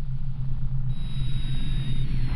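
Logo sting sound effect: a deep, steady drone, with a thin high tone coming in about halfway and a faint rising sweep beginning near the end.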